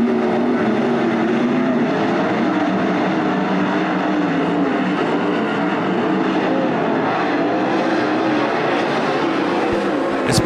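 A pack of 410 sprint cars racing, several 410-cubic-inch V8 engines heard at once, their pitches wavering up and down as they go around the track.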